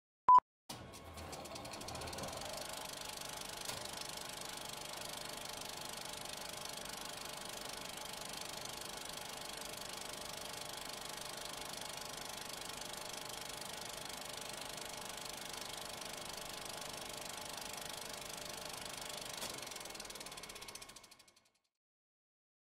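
A short, loud beep, then a film projector running: a steady mechanical noise with hiss that fades out about a second before the end.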